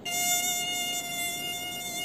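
Mosquito in flight: a steady whine made by its wings, which beat about 500 times a second.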